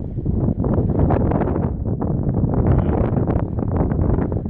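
Wind buffeting the microphone: a loud, uneven rumbling noise with no pitched sound in it.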